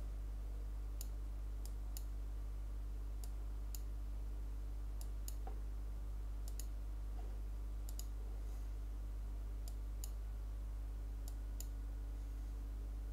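Computer mouse button clicking, about fifteen sharp clicks at irregular intervals, often in quick pairs, as sliders are worked on screen. A steady low electrical hum runs underneath.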